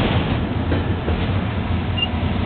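Intermodal freight train's well cars rolling past close by: a steady rumble of steel wheels on rail, with a few clacks as the wheels cross rail joints.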